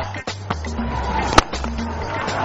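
Music with a steady bass line, and a single sharp crack about a second and a half in, the cricket bat striking the ball for a cover drive.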